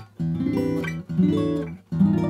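Steel-string acoustic guitar strumming chords: two chords, each ringing under a second and then cut off briefly before the next.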